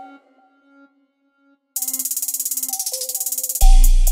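Hip hop instrumental beat at a breakdown: the drums and bass drop out, leaving a soft sustained melody line. A rapid hi-hat roll comes in just under two seconds in, and the heavy bass and kick drum return loudly near the end.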